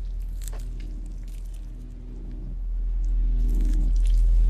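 Low droning film-score soundscape with a steady hum underneath and a few faint clicks, swelling louder over the last couple of seconds.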